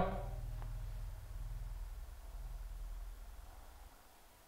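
Quiet room tone: a low rumble that fades out near the end.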